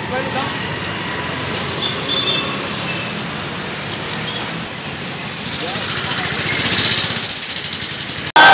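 Motorcycle engines running in a slow-moving bike rally, mixed with the talk and calls of many men's voices; the noise swells a little near the end.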